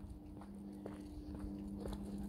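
Faint footsteps on a pavement while walking, a few light taps about a second apart, over a steady low hum.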